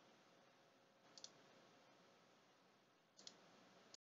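Near silence broken by two faint computer mouse clicks, each a quick press-and-release, about a second in and again after about three seconds.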